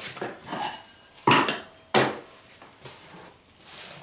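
Objects being set down and shifted on a workbench: a series of knocks and clatters, the loudest a little over a second in and again at about two seconds. Near the end comes a soft rustle of plastic sheeting being handled.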